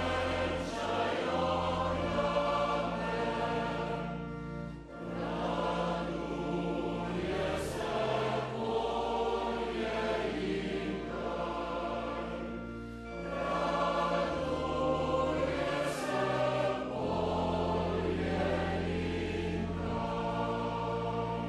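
Male-voice choir singing a cappella in held chords over deep bass notes, with short breaks between phrases about five and thirteen seconds in.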